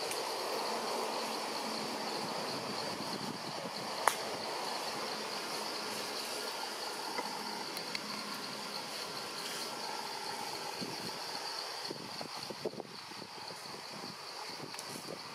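Steady high-pitched chorus of insects buzzing in tropical forest, over a faint haze of outdoor ambience. A single sharp click comes about four seconds in, and a few soft rustles near the end.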